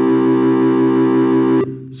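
A C major chord (C, E and G) played as synthesized keyboard tones from a browser-based piano app, held at a steady level and cut off abruptly about one and a half seconds in.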